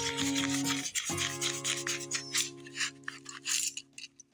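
A paper coin-roll wrapper being torn and peeled off a roll of half dollars by hand: a run of short crinkling and rubbing scratches. Background music with long held chords plays underneath.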